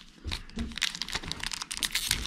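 Foil trading-card booster pack crinkling in the hands as it is torn open: a rapid, irregular run of crackles.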